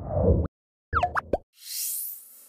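Animated logo sound effects: a short low swell, then a quick run of plopping pops with gliding pitch about a second in, and a high shimmering sweep near the end.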